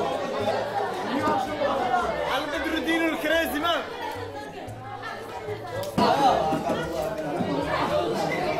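Chatter of many teenage students talking over one another in a classroom with a reverberant room, with a sudden sharp sound about six seconds in.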